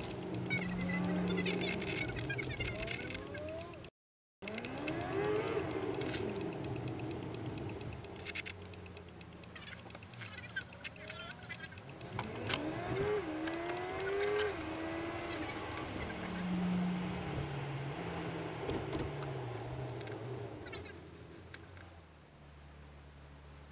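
Car interior driving sound, sped up, with the engine's pitch rising and falling in quick glides as the car slows and accelerates through traffic. The sound cuts out completely for a moment about four seconds in.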